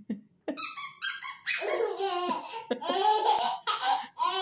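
A four-month-old baby laughing: high-pitched squeals begin about half a second in, then come repeated bouts of laughter.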